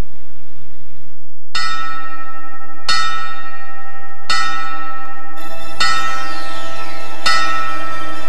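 A bell struck about five times, roughly a second and a half apart, each strike ringing on with many overtones. A low hum joins the ringing about two thirds of the way through.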